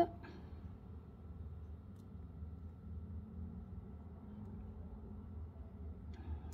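Quiet room tone with a steady low hum and one faint tick about two seconds in; the needle and thread handling is barely audible, if at all.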